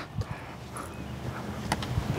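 Low rumble of wind on the microphone, with a faint tap about one and a half seconds in.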